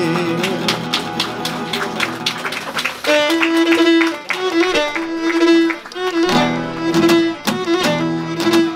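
Cretan lyra playing an ornamented bowed instrumental melody over strummed laouto and guitar accompaniment, with no singing; a new lyra phrase starts about three seconds in.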